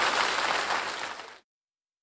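Theatre audience applauding, fading and then cutting off abruptly to silence about one and a half seconds in.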